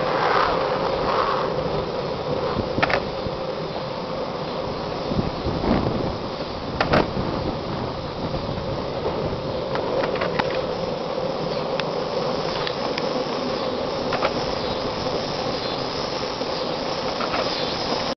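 Longboard wheels rolling steadily on pavement, a continuous rumble with a held hum, broken by a few short sharp clicks.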